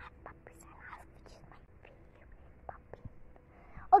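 Faint whispering in short bursts, with a few small clicks of handling noise.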